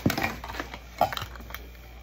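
Handling of a lidded gift box full of costume jewelry as it is lifted onto a lap and opened: a knock at the start, then light clicks and rattles, with a sharper click about a second in.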